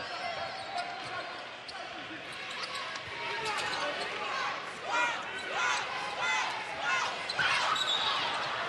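Basketball being dribbled on a hardwood arena court amid steady crowd noise, with several short high-pitched squeaks from about halfway through.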